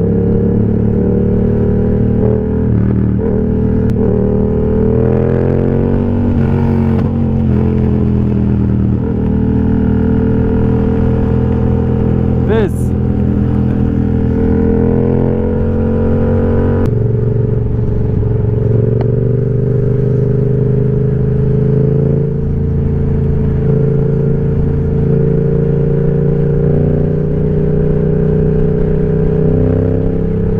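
Yamaha MT motorcycle engine running under way at road speed, with wind rush. Its pitch climbs steadily a few seconds in as the bike accelerates, and the engine note changes suddenly just past halfway.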